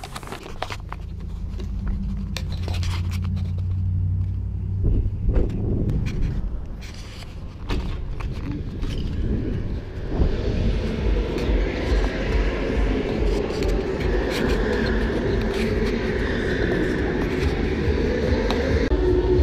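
Low rumble and scraping handling noise from a carried camera, with scattered clicks. About ten seconds in, as a glass door opens, a louder steady din of an indoor go-kart raceway hall takes over.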